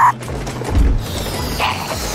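Cartoon sound effect of a balloon inflating out of a toy tube: a low thump about three-quarters of a second in, then a steady hiss of air.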